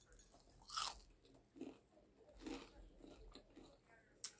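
A bite into a slice of toasted garlic bread gives one sharp crunch about a second in, followed by a few softer chewing sounds.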